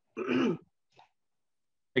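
A person clearing their throat once, a short rasp of about half a second.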